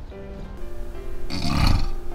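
Light background music, and about a second and a half in, one loud snore from a man asleep.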